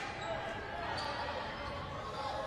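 Steady background din of a basketball game in a gym: crowd murmur and distant voices in a large echoing hall.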